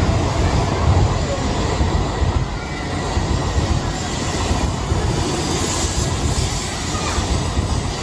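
Doctor Yellow, the 923-series Shinkansen inspection train, running out of the station close past the platform: a steady heavy rumble and rolling noise of the cars going by, easing a little after about two and a half seconds.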